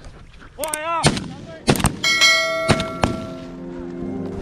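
Twelve-bore shotgun firing: a short call, then sharp loud reports about a second in and again near three seconds. A steady bell-like ringing tone sounds from about two seconds on.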